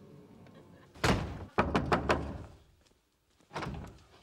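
Knuckles knocking on an apartment door: a cluster of sharp knocks between about one and two seconds in.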